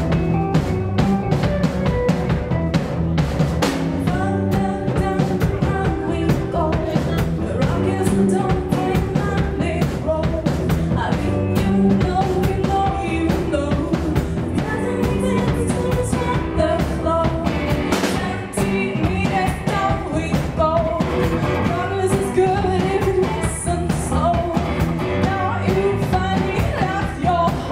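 A live band playing a pop song: a woman singing lead over electric guitar and a drum kit.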